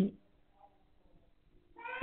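A man's voice: the tail of one drawn-out spoken word, then about a second and a half of near quiet, then the start of another drawn-out word near the end.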